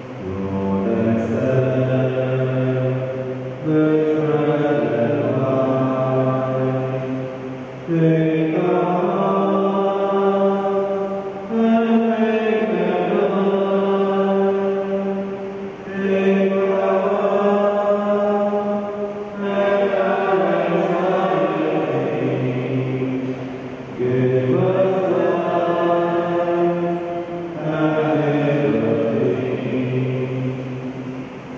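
Slow offertory hymn sung by a choir in long held notes. It moves in phrases of about four seconds, eight in all, each starting with a sharp swell.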